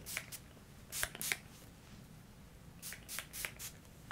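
Finger-pump spray bottle of hair prep spray misting onto damp hair in several quick spritzes, grouped at the start, about a second in, and around three seconds in.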